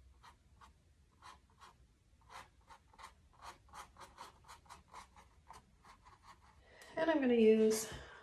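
Paintbrush scratching on stretched canvas in short, separate dabbing strokes that speed up to about four a second, laying dark acrylic paint into the owl's feathers. A voice starts near the end.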